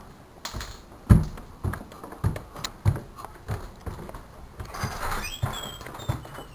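Footsteps: a person walking, heavy low thuds at about two steps a second.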